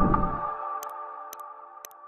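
An intro jingle's held chord fades away. Over it come three faint, sharp clicks about half a second apart, the click effects of a subscribe-button animation.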